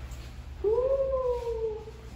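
A long, drawn-out "ooh" of amazement in a high voice, starting about half a second in, rising a little and then slowly falling away for over a second: a reaction on first seeing the newly permed curls.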